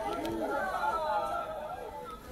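Indistinct chatter of people talking in a crowd, with no clear words.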